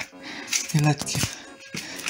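A man says one short word over background music.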